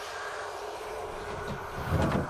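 Steady dark rumbling drone with hiss and a faint held tone, the sound design of a horror trailer, swelling into a low boom right at the end.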